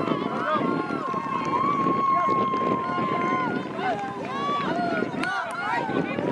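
Many voices shouting and calling at once across a soccer field, none of them clear words. A steady high tone runs beneath them for the first half and stops.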